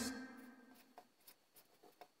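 The last notes of the music die away within the first half second. Then there is near silence with a few faint ticks from a felt-tip marker writing on paper.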